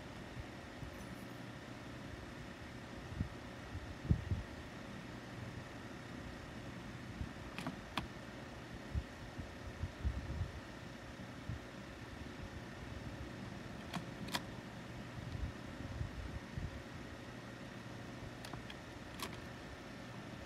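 Steady background hum with scattered faint taps and soft low bumps as a Pigma Micron fineliner inks on a paper tile, and a couple of sharper clicks partway through.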